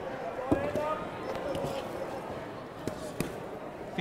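A few dull thuds of boxing gloves landing during an exchange, the strongest about half a second in, over the steady hum of an arena crowd.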